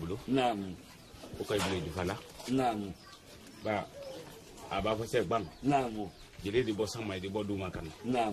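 Men talking in conversation in Malinke, in short phrases with brief pauses between them.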